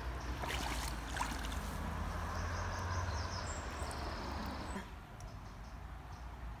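Shallow stream running over a muddy riverbed, with a low rumble beneath it and a few small knocks. The rumble eases off about five seconds in.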